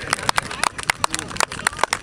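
Scattered hand claps from a small crowd, irregular and sharp, several a second, with brief faint voices.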